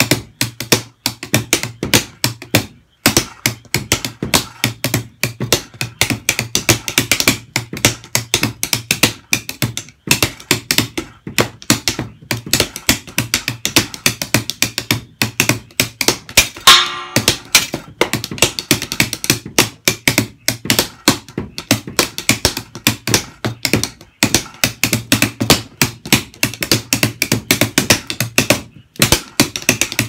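Drumsticks playing a swung shuffle groove on a makeshift drum kit of paper-covered cardboard boxes and a tape-damped cymbal: fast, dry taps and thuds over a steady low kick, with a few brief breaks. Just past the middle there is one short ringing metallic hit.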